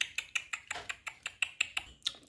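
Rapid, even clicking smacks, about eight a second: mouth smacking made as pretend chewing while a plush toy is 'fed'.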